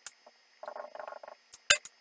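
Dry-erase marker squeaking on a whiteboard in a run of short strokes, then a few quick sharp taps near the end as the tip dabs dots onto the board.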